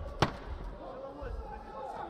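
A single sharp smack of a boxing glove punch landing, about a quarter second in, with voices in the background.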